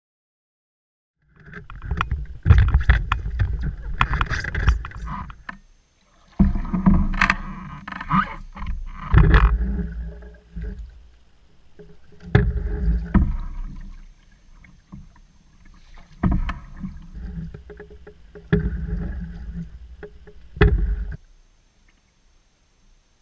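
Open canoe being paddled, heard through a camera mounted on the boat: water and paddle against the hull come in uneven loud bursts of low rumble with sharp knocks, separated by quieter gaps.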